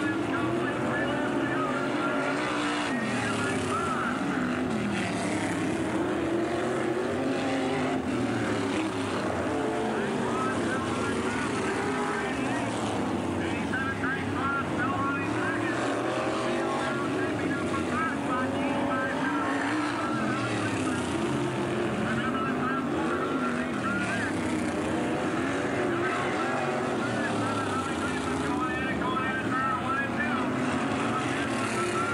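Several dirt-track modified race cars at speed, their engines revving up and down in overlapping rising and falling pitches as they lap the oval.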